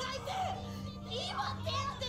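A high, young-sounding voice speaking in an agitated way, under background music and a steady low hum.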